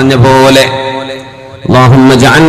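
A man's voice chanting in a melodic, sing-song style through a microphone; a held note trails away about half a second in, and the voice comes back strongly near the end.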